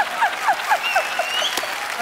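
Rapid, high-pitched 'ha-ha-ha' laughter from one person that falls in pitch and trails off about a second in, over applause and laughter from a studio audience.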